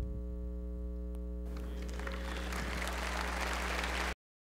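Steady electrical mains hum; about a second and a half in, an audience starts applauding, the applause building slightly toward the end.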